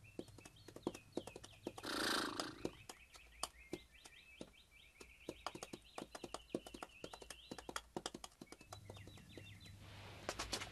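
Horse's hooves galloping on a dirt track: faint, irregular clopping beats, with steady high chirping behind them and a short rushing burst about two seconds in.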